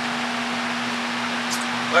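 Steady hiss of room noise with a constant low hum, with one brief faint click about three-quarters of the way through.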